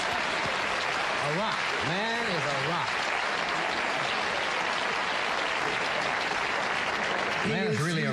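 Studio audience applauding steadily. A man's voice is heard briefly over it about a second and a half in, and talking starts again near the end.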